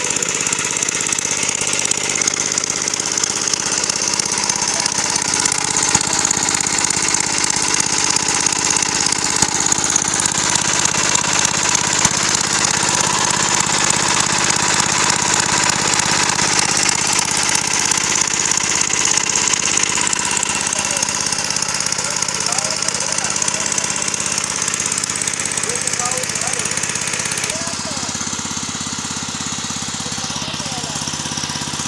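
Small stationary engine running steadily, turning a chain-and-sprocket drive to the wooden rollers of a sugarcane crusher. It gets slightly quieter near the end.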